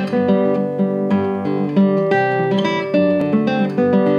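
Classical guitar fingerpicking a tune: a steady run of plucked melody notes over ringing bass notes.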